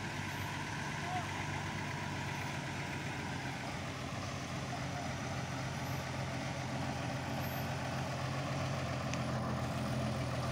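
Shaktimaan truck's diesel engine running in a steady low drone as the truck crawls closer, with a higher whine that drops a little in pitch about four seconds in. It grows slightly louder near the end.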